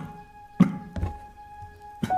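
A man coughing: one sharp cough about half a second in and a weaker one at about a second, over a held note of soundtrack music.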